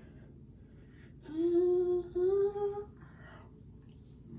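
A woman humming two held notes, the second a little higher and gliding slightly upward, lasting just under two seconds.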